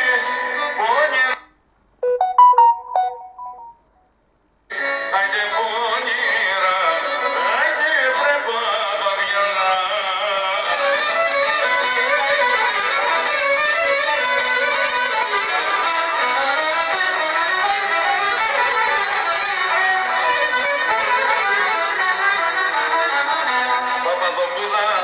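A live folk band led by a violin plays dance music. About a second and a half in, the music cuts out briefly, leaving a few short beeping tones, then comes back after about three seconds and runs on steadily.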